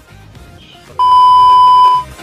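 A single steady electronic bleep tone, about a second long, cutting in halfway through and stopping suddenly, the kind edited in to bleep out speech. Soft background music runs underneath.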